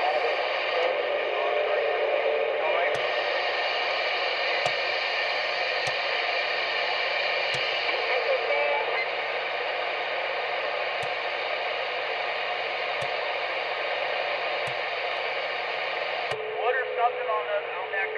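Realistic TRC-433 CB base station receiving skip: steady static with faint, garbled voices of distant stations. Eight clicks about a second and a half apart as the channel selector steps up from channel 19 to 27. A steady whistle joins the static after the last click.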